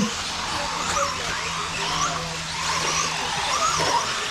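Radio-controlled 4wd mini truggies racing on a dirt track, their motors whining in repeated short rises and falls in pitch as they accelerate and slow through the corners.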